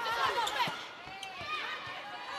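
Indoor volleyball rally: court shoes squeaking in short, rising-and-falling chirps on the sports floor, with a few sharp knocks of the ball being played, over the steady hum of the arena crowd.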